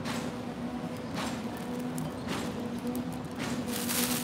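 Footsteps on a wet walkway, soft shuffles roughly once a second, over a steady low hum.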